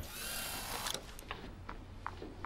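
A television's hiss lasting about a second as a surveillance videotape comes up on screen, followed by a few faint ticks.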